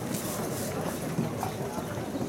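Footsteps of baseball players in spiked shoes jogging and shuffling on infield dirt, mixed with their voices.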